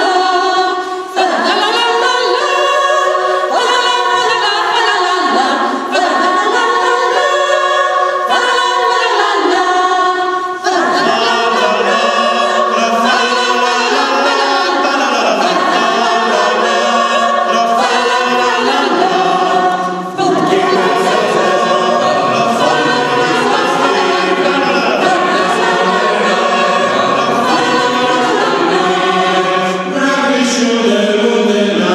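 Mixed choir of women's and men's voices singing a Christmas carol a cappella in several parts, with short breaks between phrases about a second, six, ten and twenty seconds in.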